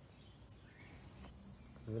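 Quiet outdoor ambience with a few faint, brief high-pitched chirps.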